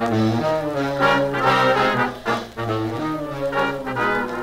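1930s swing dance band playing a full ensemble passage with no vocal, trombones and trumpets leading in sustained chords, from a 1938 78 rpm shellac record.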